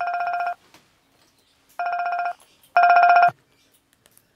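Mobile phone ringing with an incoming call: three short bursts of a rapidly pulsing electronic ringtone, the last one the loudest.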